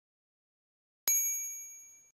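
A single bright metallic ding about a second in, ringing with several high tones that fade away over about a second, as a bell-like chime sound effect.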